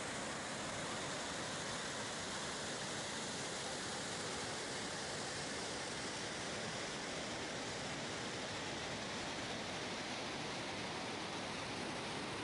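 Whitewater waterfall cascading over rocks in a narrow gorge: a steady, even rush of water with no breaks.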